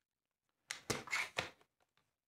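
Short cluster of plastic scrapes and clicks, starting just under a second in and lasting about a second: a plastic PIKO model railway track section and a small circuit board being handled and pressed together.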